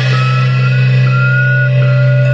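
Amplified band instruments left ringing after the playing stops: a loud, steady low hum with a thin, high whine above it that wavers in pitch and breaks off and returns a few times, like amplifier feedback.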